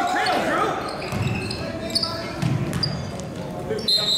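Basketball game on a gym's hardwood court: a ball bouncing and several short, high sneaker squeaks, with spectators shouting.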